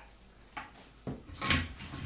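Channel-lock pliers clicking and clinking against a nut as it is tightened on a toilet tank: a couple of sharp clicks about half a second and a second in, then a louder run of knocks near the end.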